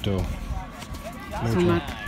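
A person talking briefly, in short bursts of speech.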